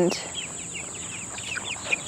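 Young chickens peeping in rapid short falling chirps, over a steady high drone of crickets.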